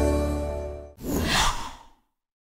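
A held synthesised chord from an intro jingle fading out, then about a second in a short breathy whoosh sound effect that rises and falls away.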